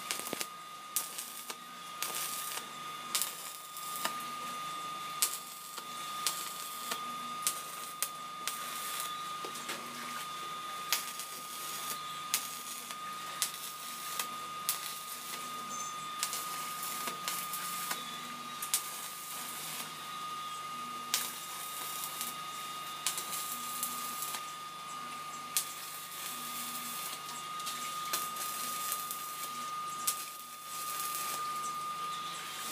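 Stick-welding arc from a small red mini welding machine, crackling and sputtering as the rod burns along steel wire mesh, with sharp snaps every second or two. A steady high-pitched whine runs underneath.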